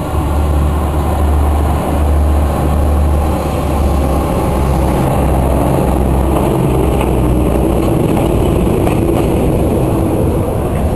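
KiwiRail DSG class diesel-electric shunting locomotive running past with a steady low engine drone. It is followed by container wagons rolling by on the rails.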